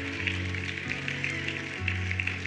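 Soft background music from a worship band's keyboard: sustained chords that change about a second in and again near the end, with faint light ticks above them.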